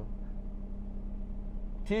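A vehicle engine idling nearby: a steady low hum that does not change.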